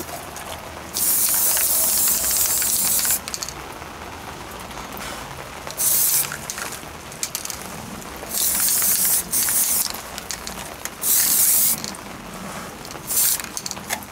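Aerosol spray-paint can hissing in a series of bursts as paint goes onto a steel helmet: one long burst of about two seconds, then five shorter squirts.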